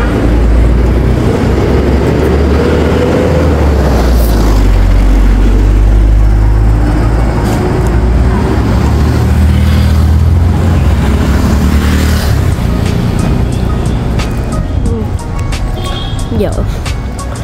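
Loud, steady low rumble of road traffic and vehicle engines, mixed with background music.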